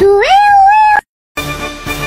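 A domestic cat gives one long, loud meow that rises in pitch and then holds steady, ending about a second in. After a short silence, background music starts.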